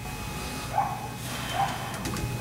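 A dog yelping twice, two short sharp barks a little under a second apart, over a steady low hum.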